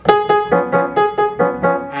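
Grand piano played in a quick run of short notes, about five a second, in the middle register.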